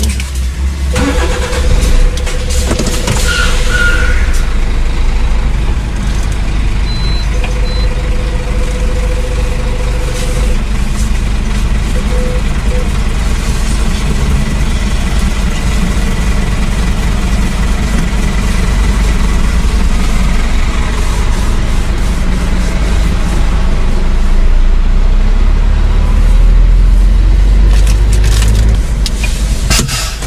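Truck's diesel engine running, heard from inside the cab as a steady low rumble that grows louder in the last few seconds.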